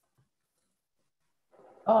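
Near silence on a video call line, then a man's voice starting to speak just before the end with a drawn-out "um".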